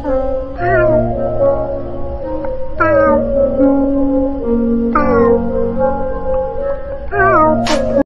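Music of held, sustained notes with a cat's meow coming in four times, about every two seconds, each one falling in pitch. A short sharp sound near the end.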